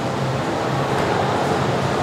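Steady room noise with a low, even hum from the gym's ventilation.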